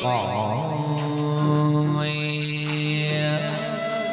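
Chầu văn ritual music: a singer glides down into one long, steady held note over the accompanying ensemble, with a bright high shimmer joining for about a second and a half midway.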